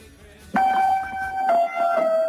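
Baby grand piano played, heard through a video call: a single note struck about half a second in and held ringing, then a slightly lower note about a second later.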